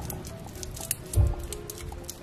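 Background music with a light tune, over which small plastic scissors snip and crinkle a lollipop's plastic wrapper in short clicks. A soft low thump about a second in is the loudest sound.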